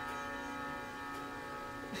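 Background instrumental music: a steady, sustained drone of held tones, sitar-like in character.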